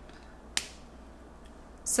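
A single sharp click about half a second in as a small glass serum sample bottle is handled, over quiet room tone.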